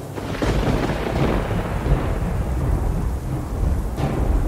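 Thunder and rain sound effect: a thunderclap about half a second in that rolls and fades over the next couple of seconds into low rumbling over steady rain.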